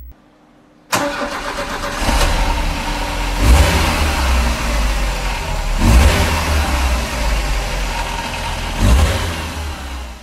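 Car engine starting abruptly about a second in, then running with three louder swells of revving a few seconds apart.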